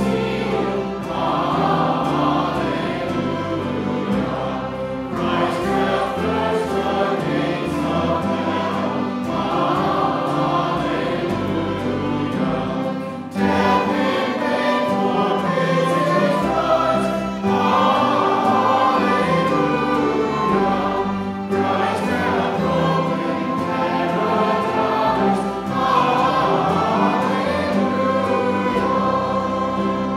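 A church congregation singing a hymn together, accompanied by piano and a small string ensemble with violins. The singing moves in phrases a few seconds long, with short breaks between them.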